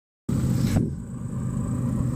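A steady, low engine rumble that starts a moment in, with a brief hiss over it at first.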